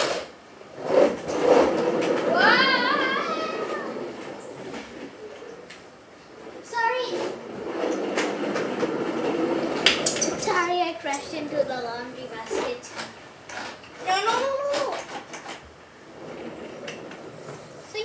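Hard plastic wheels of a ride-on swing car rolling and rattling across a tiled floor as the rider pushes it along with her feet, in two long runs with a quieter stretch later. A voice makes a few short wordless sounds over it.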